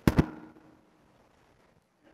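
Two sharp pops on the lectern microphone in quick succession, each ringing briefly through the room's sound system, while the presenter checks the mic for feedback.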